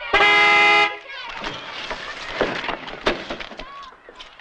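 Car horn sounding one loud, steady blast of just under a second, followed by scattered knocks and scuffling.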